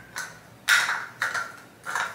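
Small cosmetic jars and bottles clinking and knocking as they are handled, about four short clicks with a brief ring, the loudest about two-thirds of a second in.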